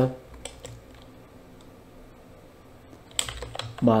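Computer keyboard typing: a few faint keystrokes in the first second, then a quick run of louder keystrokes about three seconds in.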